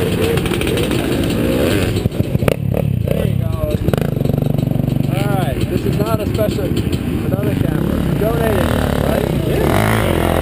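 Dirt bike engine idling steadily, with a few sharp knocks about two seconds in.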